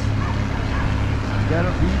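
Voices talking outdoors, with one word, "beach", spoken near the end, over a steady low rumble.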